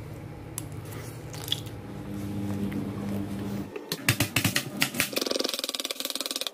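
A low steady hum, then from about four seconds in a run of sharp knocks and rapid clicks: a knife chopping onion on a plastic cutting board.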